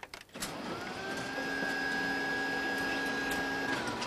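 An electric machine starts with a click, its motor whining up to a steady pitch and running evenly, then winding down near the end.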